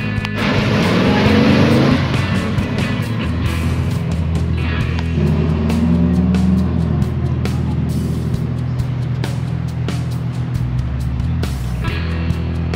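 Background music with a steady beat, over which a car engine revs up with rising pitch in the first two seconds, the loudest moment, and is heard again more briefly around six seconds in.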